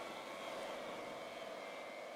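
Faint steady background noise with a low hum: room tone, with no distinct event.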